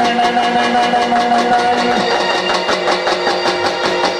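Live Garba band music with no singing: long held notes over drums playing a fast, steady beat that grows busier about halfway through.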